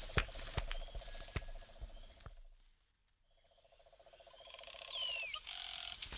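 Produced jungle ambience: a rhythmic trilling animal chorus with regular soft knocks fades out to silence in the middle. It then fades back in, with several quick falling bird-like whistles near the end.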